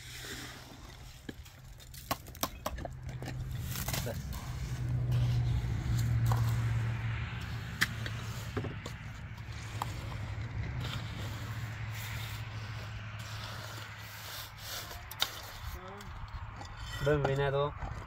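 Wet cement being scraped and smoothed by hand along the base of a cinder-block wall, with scattered small scrapes and knocks, over a steady low hum that swells about four to seven seconds in.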